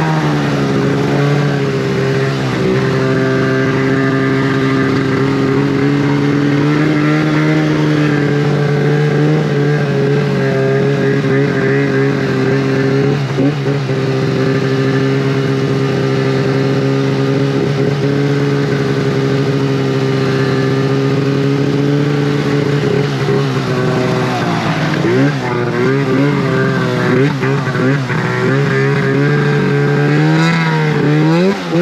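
Snowmobile engine running under load at a steady high speed, its pitch held even for most of the stretch. In the last few seconds the revs rise and fall repeatedly.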